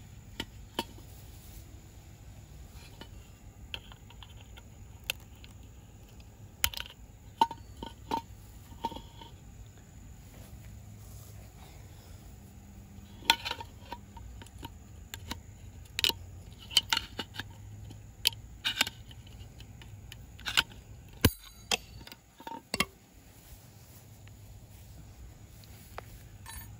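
Steel tool tip clicking and scraping against a centrifugal clutch's snap ring and hub as the ring is pried out of its groove: irregular sharp metallic ticks, a few ringing briefly, spread through and bunched more thickly in the second half.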